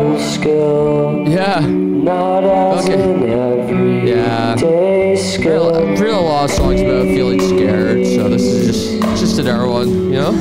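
A home-recorded pop song: a man singing long, held notes over acoustic guitar with effects and a Roland Juno keyboard.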